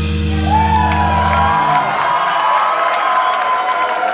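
A rock band's final chord rings out on sustained guitar and bass and stops about a second and a half in. Crowd cheering and whooping rises over it and carries on after.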